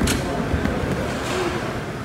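Busy gym room noise: a steady low rumble, with one sharp knock at the very start.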